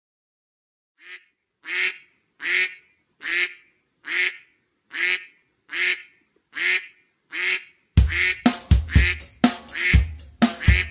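Duck quacking: nine short quacks, evenly spaced about one a second apart, after a second of silence. Near the end a children's song with a drum-kit beat comes in loudly.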